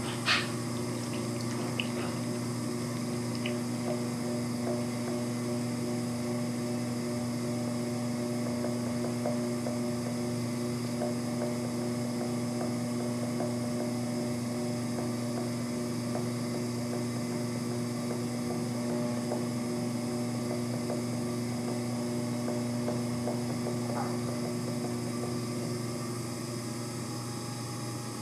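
Electric pottery wheel's motor running at high speed with a steady hum, loaded by a lump of wet clay being centered.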